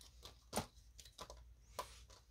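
Cardboard 2x2 coin holders being handled and slid into the pockets of a clear plastic album page: light tapping and plastic rustle, with two sharper clicks, about half a second in and near the end.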